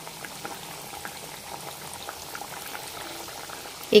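Mathri dough sticks deep-frying in hot oil in a steel kadhai: a steady bubbling sizzle with faint scattered crackles.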